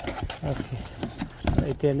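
Hard plastic tray knocking and clattering as it is handled, a string of irregular short clacks, followed by a person speaking near the end.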